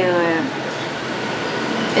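A woman's drawn-out hesitation sound 'eh', then a steady, even rush of background noise with no other events.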